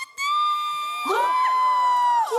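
Women's voices letting out long, held, high-pitched squeals of surprise and delight. A second squeal joins the first about a second in, so two voices overlap.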